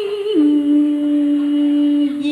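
A woman singing a long held note in tân cổ vọng cổ style. The note steps down to a lower pitch about a third of a second in and is held steadily after that.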